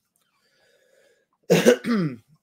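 A man clears his throat once: a short, harsh, cough-like burst about one and a half seconds in.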